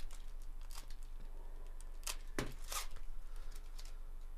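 A trading-card pack wrapper crinkling and rustling in gloved hands, with a few short bursts of crackle, the loudest a little after two seconds in, over a faint steady electrical hum.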